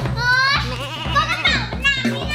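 A young girl whining and wailing without words in a high, wavering voice, over background music.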